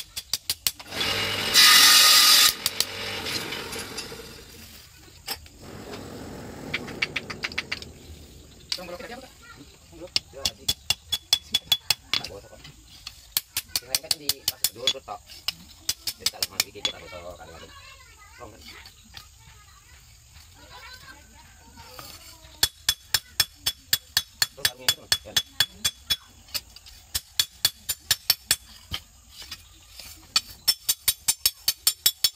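Hand hammer striking a red-hot golok blade on an anvil, forging it: runs of sharp metallic blows, steady at about three a second in the last several seconds. A loud burst of noise comes about a second and a half in.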